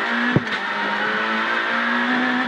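Renault Clio R3 rally car's naturally aspirated 2.0-litre four-cylinder engine, heard from inside the cabin, held flat out at steady high revs. A single sharp knock comes about a third of a second in.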